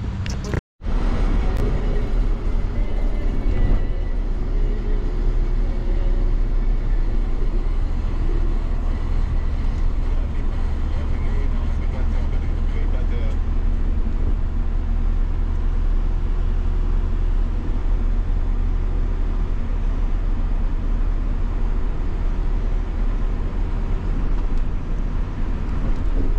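Steady engine and road rumble heard inside the cabin of a moving minibus, starting after a brief cut under a second in.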